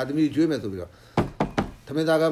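A man's voice speaking, breaking off just before halfway, followed by a few sharp, loud knocks in quick succession.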